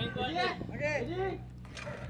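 Voices of a group of people talking and calling out, fairly quiet, with a faint low steady hum underneath.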